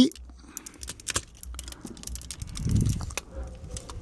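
Hard plastic Transformers action figure being handled: a run of light, irregular clicks and rattles as its parts are pressed and moved to work the Cyber Key feature that opens the chest compartment.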